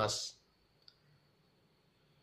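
A man's voice trails off at the start, followed by a pause of near silence broken by a single faint, short click about a second in.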